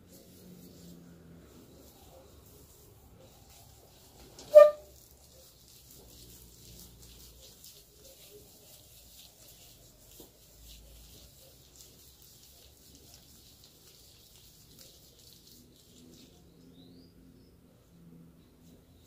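Faint sounds of hands working a creamy hair mask through wet hair, with one brief, loud, sharp sound about four and a half seconds in.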